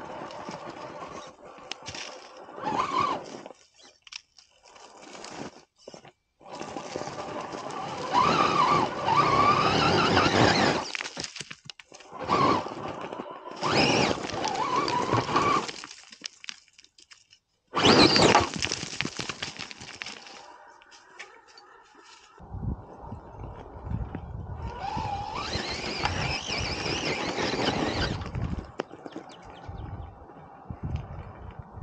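Axial SCX10 Pro RC rock crawler's electric motor and geared drivetrain whining in throttle bursts, rising in pitch as it pulls, with its tyres scraping and crunching over rock and dirt.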